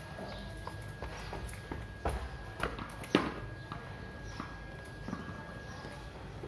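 A few sharp knocks of a cricket ball and bat in play on a tiled yard, coming about two, two and a half and three seconds in, the last the loudest.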